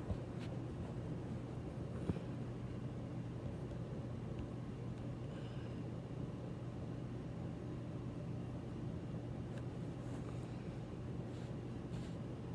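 Steady low hum of a quiet room, with two light knocks about two seconds apart near the start as the recording phone is turned around and set in place.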